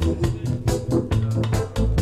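Reggae record playing over a sound system: a heavy bass line with guitar and regular drum and cymbal hits, with no vocal.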